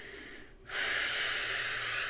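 A woman's long, steady breath, starting suddenly a little way in and slowly fading.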